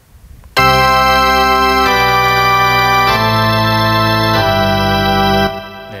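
Korg Triton LE's 'Full Drawbars' drawbar-organ sound, with every drawbar pulled out, playing four held chords in a row, each about a second long, then fading out.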